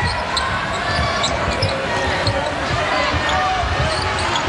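Basketball being dribbled on a hardwood court, with repeated thuds, over the noise of an arena crowd with voices in it. Short, sharp squeaks are scattered through.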